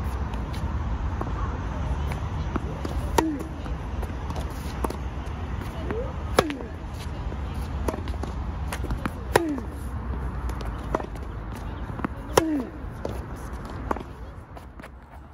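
Tennis forehand rally: a sharp racket-on-ball pop about every three seconds from the near player, each with a short breathed-out grunt that falls in pitch, and fainter hits from the far player in between. A steady low rumble runs underneath.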